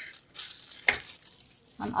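Thin plastic bag rustling as it is peeled from under a freshly unmoulded disc of soft cheese, with one sharp click just under a second in.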